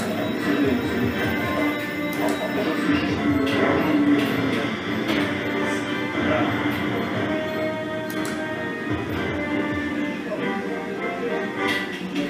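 Mighty Dragon slot machine playing its free-spin music, with short clicks as the reels spin and stop.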